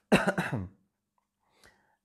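A man gives one short throat-clearing cough, about half a second long, right at the start.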